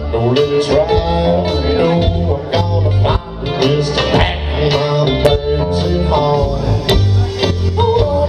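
Live country-rock band playing an instrumental passage: electric guitar, electric bass, mandolin and drums, with bending lead lines over a stepping bass and sharp drum hits.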